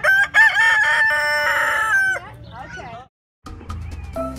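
A rooster crowing once, a single loud call of about two seconds that rises at the start, holds steady and drops off at the end. After a brief dropout, music begins near the end.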